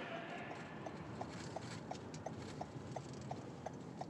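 Car turn-signal indicator ticking steadily, about three short pitched ticks a second, over faint engine and road noise inside the car.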